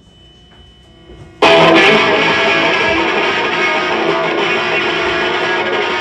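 A live rock band's electric guitars come in loudly and suddenly about a second and a half in, after a quiet start, holding sustained chords as the song opens.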